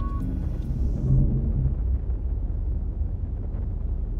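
A steady low rumble, like a sound-design drone under the soundtrack, with the last tones of the preceding music fading out in the first half second and a brief low tone about a second in.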